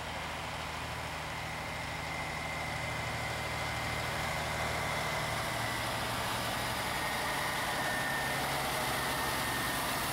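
Diesel engine of a semi tractor pulling a loaded lowboy trailer, running steadily at low speed and growing gradually louder as it approaches. A faint steady high tone sits above the engine.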